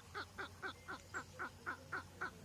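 A man's high-pitched laughter, faint, in a steady run of short 'ha' notes about five a second, each dropping in pitch.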